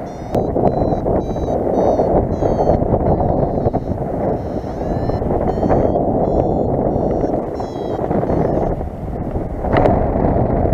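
Wind rushing over the microphone in flight, with a paragliding variometer beeping above it in quick short high tones, some sliding up in pitch, that stop near the end; the beeping is the vario's climb tone, signalling lift.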